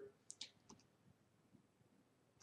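Near silence, broken by a few faint short clicks in the first second.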